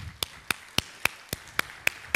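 One person clapping steadily, about four claps a second, in a large hall.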